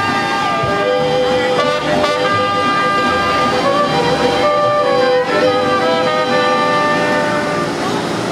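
Mariachi ensemble playing without singing: violins and trumpet carry long held melody notes over strummed guitars and a low pulsing bass.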